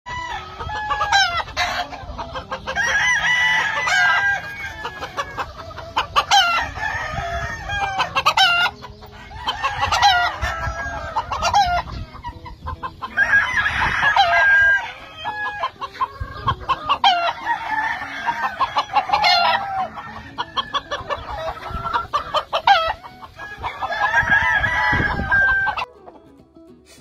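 Gamefowl roosters crowing, about five long crows a few seconds apart, with shorter clucks and calls between them.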